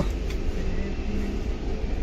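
Steady low rumble inside an Indian Railways 3rd AC sleeper coach, with faint voices in the background.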